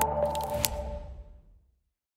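The tail of a news channel's electronic logo sting: two held synth tones and a low rumble fade out, with a few sharp ticks, dying away about a second and a half in.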